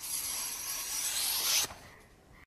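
A blade drawn along a thin strip of bamboo, splitting it into flexible sheets. It is one continuous scrape of about a second and a half that swells slightly, then stops abruptly.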